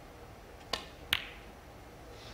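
Two sharp snooker-ball clicks about half a second apart: the cue tip striking the cue ball, then the cue ball striking the black. The second click is the louder.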